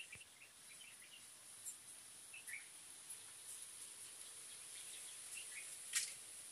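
Faint outdoor ambience: scattered short bird chirps over a steady high-pitched insect drone, with a sharp click near the end.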